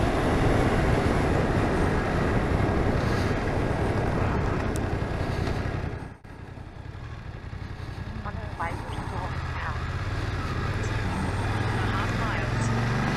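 Riding noise on a moving BMW F900R parallel-twin motorcycle: wind rush over the microphone with the engine running underneath. After a sudden short drop in level about halfway through, the engine's steady low note comes through more clearly.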